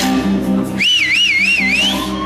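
Live electric guitar picking a repeating low figure. About a second in, a loud warbling whistle from the crowd cuts in, swinging up and down three times and sliding upward at the end.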